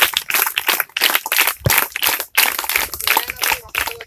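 A group of people clapping, an irregular patter of many claps.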